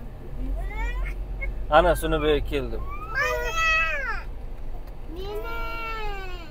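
A child's high-pitched shouts, then two long drawn-out calls that rise and fall in pitch, inside a moving car over the car's low steady hum.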